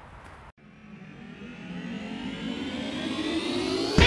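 A rising swell: several tones climb together in pitch and grow steadily louder over about three seconds, building straight into guitar music at the end.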